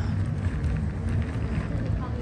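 Outdoor ambience: a steady low rumble of wind and distant traffic, with no clear events.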